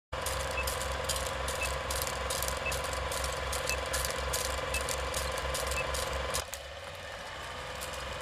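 Old film projector sound effect: a rapid rhythmic mechanical clatter with a steady hum, crackling clicks and a faint tick about once a second. It cuts off about six and a half seconds in, leaving a low hiss.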